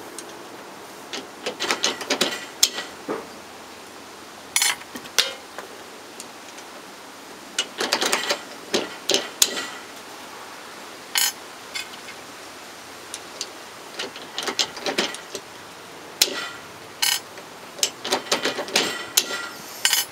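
Metallic clicks and clinks of a hand-operated RCBS RC IV reloading press being cycled to point-start .224 bullets in a swaging die, with jackets and bullets clinking as they are handled. The clicks come in irregular bunches every second or few.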